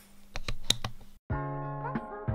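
A quick run of clicks and rubbing from a hand handling the camera, then a short break to silence and background music with held notes starting just over a second in.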